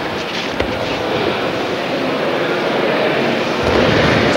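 A body thrown onto a judo-style mat lands with a thud about half a second in. Under it runs a steady rushing noise that grows slowly louder.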